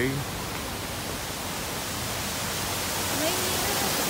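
Steady rush of water spilling from small rock waterfalls into a lagoon, growing slightly louder toward the end.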